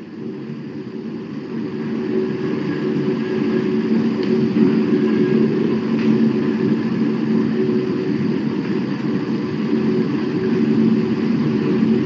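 A steady mechanical drone like an engine running, with several steady low hum tones; it grows louder over the first couple of seconds and then holds.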